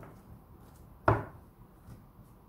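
A tarot deck knocked against a wooden tabletop as it is squared and set down: one sharp knock about a second in, with a few faint taps of the cards around it.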